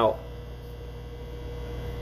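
Steady low electrical hum with a faint, even higher tone over it, unchanging throughout.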